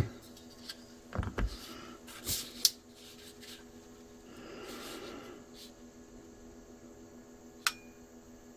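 Spring-loaded jumper clamps being handled and clipped onto a car battery's terminals: a few sharp clicks and knocks, then a soft rustle, and one sharp click near the end, over a faint steady hum.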